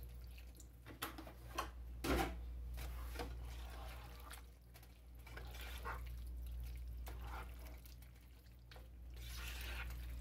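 Milk poured into a skillet of bow-tie pasta in thick alfredo sauce and stirred in with a plastic spatula to thin it: quiet liquid splashing and wet squelching, with scattered clicks and knocks of the spatula against the pan, over a low steady hum.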